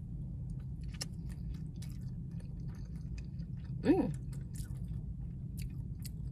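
Close-mouthed chewing of a bite of tea egg (a marinated hard-boiled egg), with soft, irregular wet mouth clicks and a brief "mm" about four seconds in. A steady low hum runs underneath.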